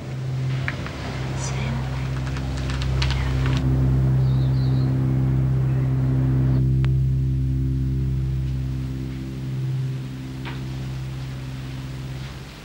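Low sustained music chords with slow changes in the held notes. Light rustling and clicks are heard over the first few seconds.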